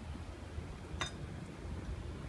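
A single light clink of hard objects about a second in, ringing briefly, over a low steady background rumble.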